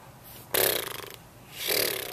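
A boy's breathy mouth sounds close to the microphone: a fluttering puff of air blown through the lips about half a second in, then a second breathy exhale near the end.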